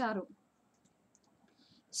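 A woman's spoken narration ending in the first moment, then near silence broken by a few faint clicks.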